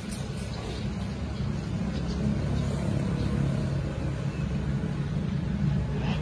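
A motor vehicle's engine running close by: a steady low rumble that grows slightly louder about two seconds in.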